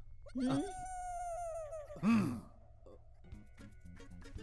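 A man's drawn-out vocal groans, with a long, slightly falling musical tone held between them. Faint background music with a steady pattern of short notes begins just before the end.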